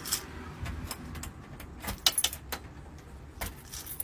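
Scattered light metallic jangling and clicks over the low rumble of a handheld phone being moved about.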